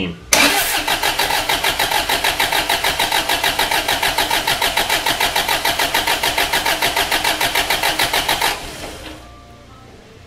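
A Mazda WL-T four-cylinder turbo-diesel being cranked over by its starter motor with the glow plugs removed and the key off, so it turns over in even, rapid pulses without firing. This is a compression test on cylinder three. The cranking starts just after the beginning and cuts off suddenly about eight and a half seconds in.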